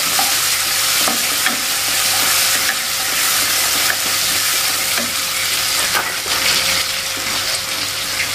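Sliced shallots and chopped chilies sizzling in hot oil in a stone-coated wok, stirred with a spatula. There is a steady frying hiss, with a few light scrapes and taps of the spatula against the pan.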